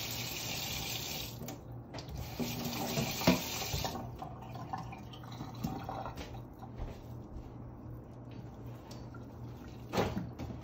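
Kitchen faucet running into a stainless steel sink, a steady water hiss that breaks briefly about a second and a half in and is shut off about four seconds in. After that, quieter hands working raw meat mixture in a steel mixing bowl, with faint soft clicks.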